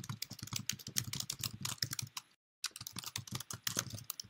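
Typing on a computer keyboard, keys clicking rapidly in quick runs, broken once by a short dead-silent gap a little past halfway.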